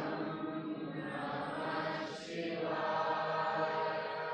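Soft chanting of the Shiva mantra, a faint held vocal tone that swells a little about two seconds in.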